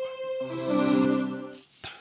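Electronic keyboard on a strings voice playing a held chord: a single upper note sounds first, lower notes join about half a second in, and the chord fades out about a second and a half in.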